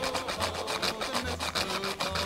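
Whole nutmeg grated on a handheld rasp grater, a run of rapid, even scraping strokes.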